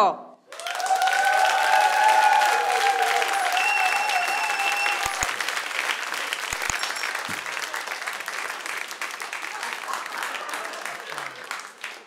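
Studio audience applauding a comedian's entrance, with cheering voices and a short whistle over the first few seconds. The clapping then dies away gradually.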